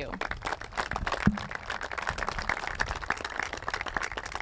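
Audience applauding: many overlapping hand claps, with one brief voice about a second in.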